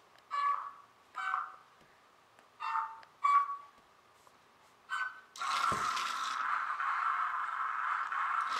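Novie interactive robot toy giving five short electronic chirps in answer to hand gestures, then a steady whirring sound from about five seconds in as it drives off across the floor.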